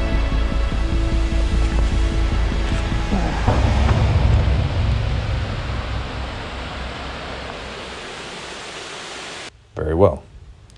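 Background music fading out over the steady rush of water from a small creek cascade. The water noise slowly fades and cuts off near the end.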